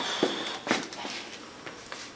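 A glass jar being handled while a person walks about in a small room: a short clink with a brief high ring at the start, then a few light knocks and taps.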